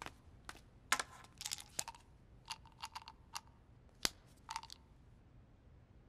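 Faint, irregular clicks and light knocks, about a dozen of them, a few with a brief ring, loudest about one second in and again about four seconds in.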